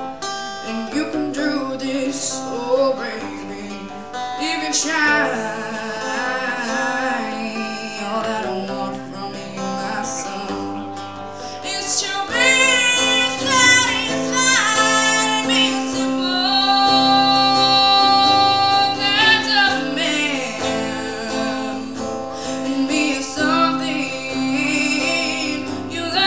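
Live performance of a woman singing with guitar accompaniment, her voice wavering with vibrato. She holds one long note about two-thirds of the way through.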